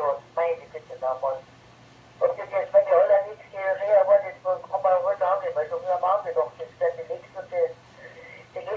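German speech coming over an amateur radio repeater link, heard through a transceiver's speaker: thin and narrow-band, with a short pause in the first two seconds, over a faint steady hum.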